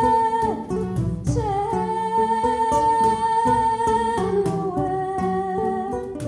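Live folk music: a woman's voice holding long, steady notes, stepping down in pitch about four seconds in, over two plucked acoustic guitars and light hand percussion.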